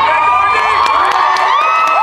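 Live audience cheering and screaming, with long high-pitched shrieks held and rising over the crowd noise and scattered claps.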